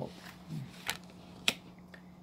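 Tarot cards being handled and laid on a table: two sharp clicks a little over half a second apart, over a faint steady hum.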